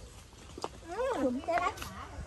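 Speech only: a short spoken "ừ" and brief talk, with a faint click or two.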